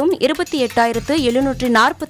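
A newsreader speaking in Tamil over a background music bed.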